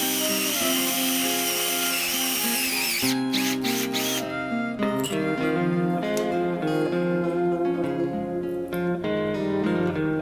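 Acoustic guitar background music throughout. For the first three seconds a power drill runs with a wavering whine, boring into the top of a sweet gum blank, then stops.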